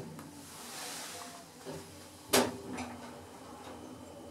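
Stannah hydraulic lift car: a short click as a floor button is pressed, then a little over two seconds in a single sharp mechanical clunk, the loudest sound, over a steady low hum as the lift gets under way upward.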